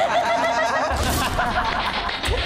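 A group of teenage boys laughing together over background music, with a low bass coming in about a second in.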